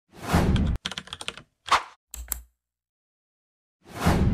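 Intro sound effects: a whoosh, then a quick burst of computer-keyboard typing, another short whoosh and a soft thud. After about a second of silence, a new whoosh builds near the end.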